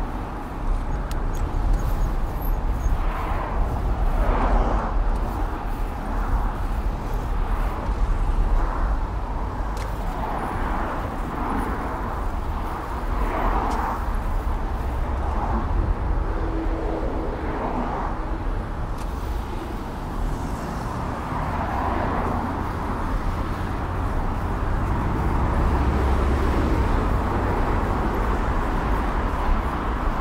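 Steady wind on an action camera's microphone while cycling, a low rumble under the noise of the surrounding car traffic.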